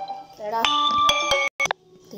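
Music with steady held notes and a few sharp clicks, cutting off abruptly about one and a half seconds in.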